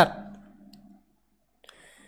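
The last spoken word trails off into near silence, broken by a single faint click a little over a second and a half in.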